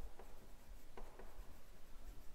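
Chalk writing on a blackboard: faint, short scrapes and taps of the chalk strokes, a few of them close together about a second in.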